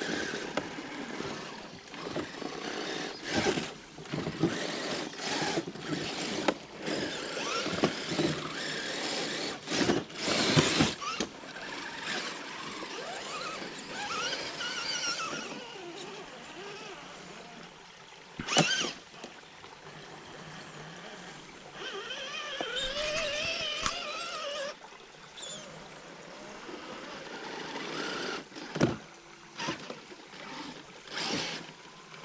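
Electric motors and gear trains of two RC rock crawlers, a Redcat Gen8 Scout II and a Traxxas TRX-4 Sport, whining in stop-start bursts that rise and fall with the throttle as they crawl over rock. Two sharp knocks stand out, one about two-thirds of the way through and one near the end.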